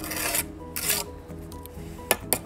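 Two short scrapes of a clay brick being pressed and worked into its wet mortar bed, one right at the start and a second just before the one-second mark, over background music with held notes.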